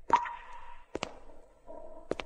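A few sharp clicks over a faint steady hum. The loudest comes just after the start and is followed by a brief ringing tone; a quick pair follows about a second in.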